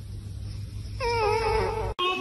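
A domestic cat meows once, a drawn-out call about a second long that starts about a second in and falls slightly in pitch, over a low steady hum.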